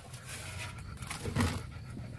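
A German shepherd panting close by, with a faint knock about one and a half seconds in.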